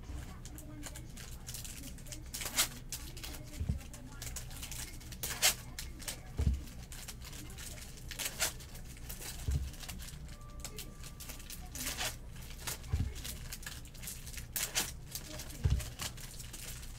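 Bowman Chrome trading-card pack wrappers being torn open and crinkling in short crackles every second or two, with cards handled and a few soft thumps on the tabletop.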